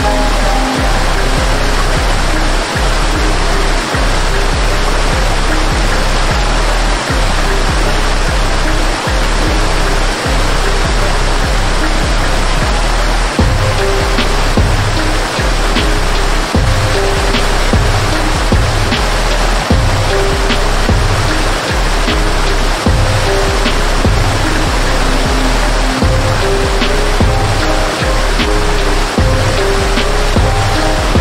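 Steady rushing of a waterfall cascading over rocks, mixed with soft background music of held notes.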